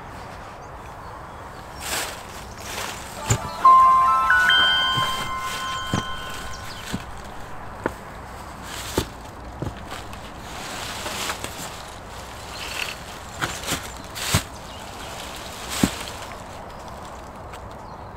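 Wooden panels knocking and scraping against each other and the frame as one is slid behind the other, with separate knocks throughout. About four seconds in, a short rising run of ringing chime-like tones starts, each higher than the last, and fades over a couple of seconds.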